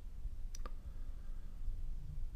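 Two quick clicks of a computer mouse button, a split second apart, over a faint low hum.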